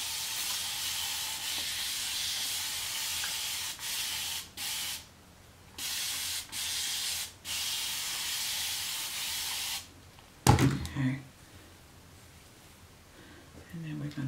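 Hand-held spray bottle misting water onto hair in long, steady hisses. The first runs nearly four seconds, then several shorter sprays follow with brief gaps, stopping about ten seconds in. A short knock follows soon after.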